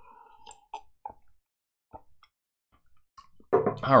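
A few faint sips from a glass tumbler of whisky: short, quiet mouth and liquid sounds in the first two seconds or so. A man's voice starts near the end.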